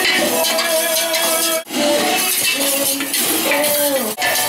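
Background music with held notes, over the clinking and scraping of a wire whisk against a stainless steel pot as thick egg-and-butter sauce is beaten.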